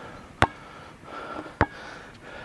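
A heavy trainer basketball strikes the hoop with a sharp knock, then about a second later bounces once on the asphalt court with another sharp smack.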